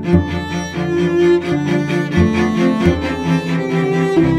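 Two cellos bowed together in a duet, one on a low line and one higher, with notes changing every half second to a second.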